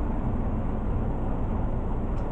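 Steady background noise, a low rumble with some hiss, unchanging and with no distinct events.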